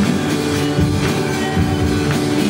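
Live church worship band playing a rock-style song, with drum kit, guitar and piano.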